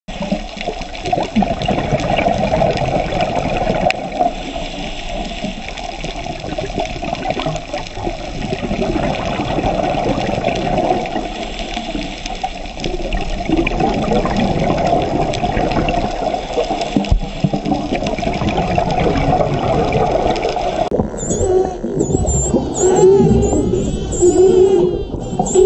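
Steady underwater water noise, a rushing, churning hiss. About three seconds before the end it changes abruptly to dolphins' high, rapidly rising and falling whistles.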